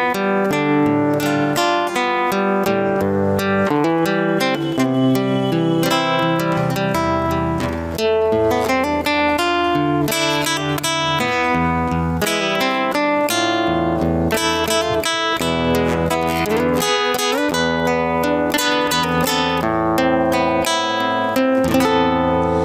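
Acoustic guitar playing the instrumental interlude of a slow bolero song, a picked melody over bass notes, with no singing.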